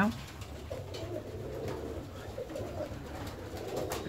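Young fancy pigeons cooing faintly and irregularly in an aviary.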